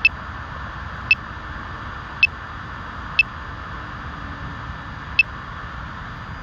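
Short, high-pitched ticks from the drone's controller or app, five of them about a second apart with a longer gap before the last, as the camera zoom is stepped back out. A steady hiss runs underneath.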